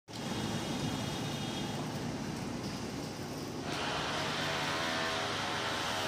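Steady street background noise, a continuous hiss and rumble like traffic, that shifts in tone about two-thirds of the way in.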